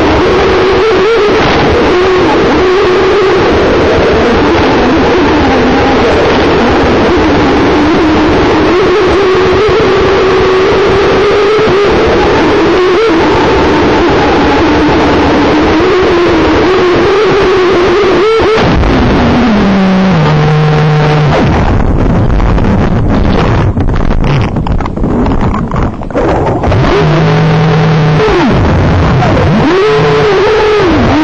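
Aquacraft brushless electric motor of an RC model boat whining at speed, its pitch wavering with the throttle, over heavy rushing noise from an onboard camera. About 18 s in the motor winds down in steps and runs slowly and unevenly, then winds back up near the end.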